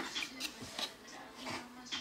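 A small cardboard perfume box being handled and opened: one sharp tap at the start, then faint scrapes and light taps of the paperboard flaps.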